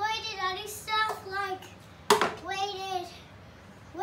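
A young child's high-pitched voice in short vocal phrases with no clear words, interrupted about two seconds in by one sharp smack, the loudest sound.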